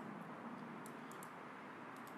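Low, steady room hiss with a few faint computer mouse clicks.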